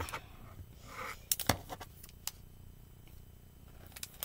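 Quiet handling sounds of a small plastic-and-card earring packet and scissors: a brief rustle about a second in, then a few light, sharp clicks.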